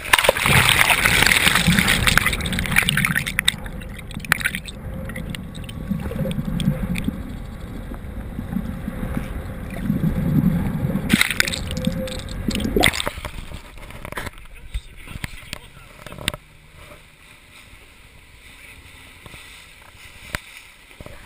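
Sea water rushing and splashing over an action camera held at the surface beside a moving inflatable boat, loudest in the first few seconds. It turns to muffled gurgling and rumbling while the camera is under water, with two brief splashes as it breaks the surface. About 16 seconds in it drops to quieter lapping.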